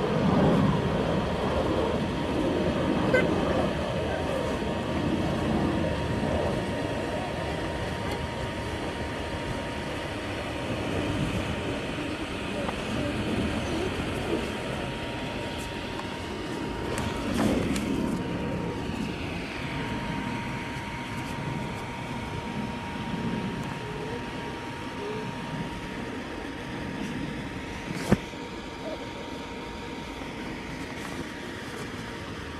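Steady whooshing rush of the electric blower that keeps an inflatable bounce house inflated, with a faint steady hum above it. There is one sharp click near the end.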